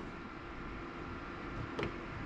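Steady low background hiss and hum of a small room, with one faint click near the end.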